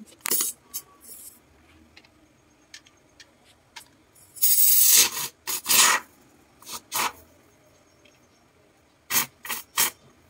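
Aerosol can of expanding foam sealant spraying through its straw nozzle in short bursts, the longest about four and a half seconds in and lasting most of a second, with three quick bursts near the end.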